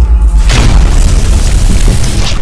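A deep, loud cinematic boom sound effect with a rumbling low end over trailer music. A rush of noise swells about half a second in.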